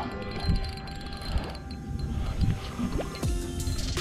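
Background music of held chime-like tones over low wind and water noise.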